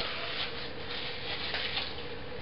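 Faint rustling of hands rolling peeled-off masking tape into a ball, with a few light ticks.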